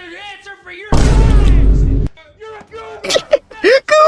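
A loud, distorted boom about a second in, lasting about a second and cutting off suddenly.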